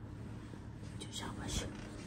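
A soft whisper, a few breathy hissing syllables about a second in, as a child is gently woken in bed.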